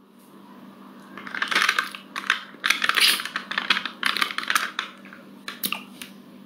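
Typing on a keyboard: bursts of rapid key clicks over a faint steady hum.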